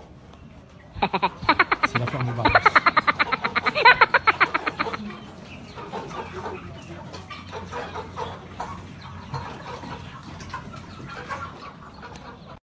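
Hens clucking in a crowded poultry room. A loud, rapid pulsing call, about ten pulses a second, runs from about a second in to about five seconds, then fainter scattered clucks go on.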